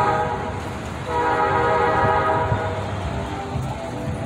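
A vehicle horn honking in two long blasts, the first ending about half a second in and the second lasting from about a second in to about three seconds, over the noise of passing traffic.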